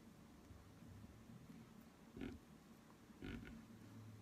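Near silence: faint room tone, with two brief soft sounds a little after two seconds and a little after three seconds in.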